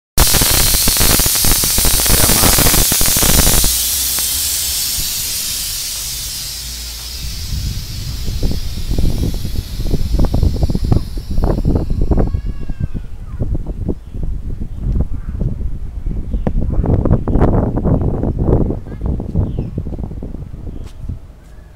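A loud hiss like compressed air escaping, strongest for the first few seconds, then dropping and fading away over about ten seconds. After it come irregular low rumbling gusts.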